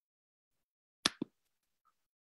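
Near silence on an online call, broken about a second in by two short, sharp pops a fraction of a second apart.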